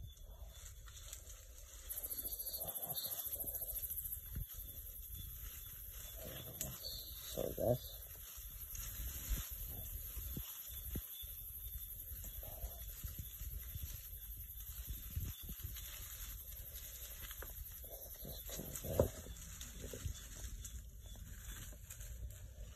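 Bushpigs foraging in dry leaf litter and undergrowth, with a few short grunts and rustles. A steady high-pitched trill runs behind them from about two seconds in until near the end.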